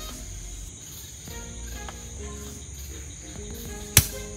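Crickets chirping steadily, and near the end a single sharp pop as the cork comes out of a bottle.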